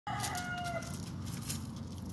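A bird call: one held note under a second long in the first second, steady in pitch, over faint crackling and clicks.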